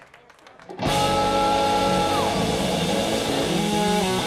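Live band music starting abruptly about a second in after a brief hush: electric guitars, bass and drum kit playing together, with a long held high note that slides down partway through.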